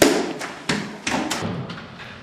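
A quick run of thumps and knocks, about five in two seconds and the first the loudest: chairs and books knocking against classroom desks as students get up to leave.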